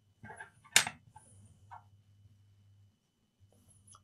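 Faint handling noises and one sharp click a little under a second in, as a laptop's internal battery cable connector is unplugged from the motherboard.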